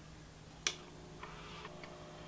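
Handheld hair steamer's trigger button clicking once, followed by a faint, short hiss of steam being released.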